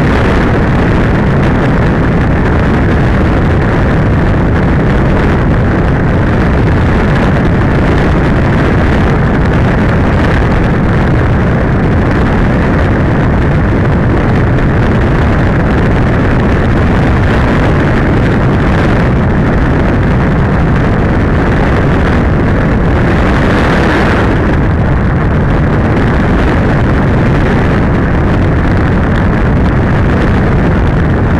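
Loud, steady rush of airflow over an RC glider's onboard camera microphone in flight, swelling briefly about four-fifths of the way through.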